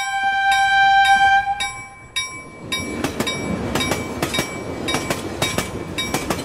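Train sound effect: a steady whistle blast for about two seconds over a bell ringing about twice a second. Then, near the middle, a rhythmic clatter of wheels over rail joints, with the bell still ringing.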